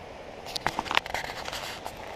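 Handling noise from a GoPro Hero camera: a run of scrapes and sharp clicks as a hand rubs and knocks against the camera, starting about half a second in, over a faint steady hiss.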